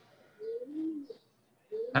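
A pigeon cooing once in the background, a soft, low, rising-and-falling coo under a second long.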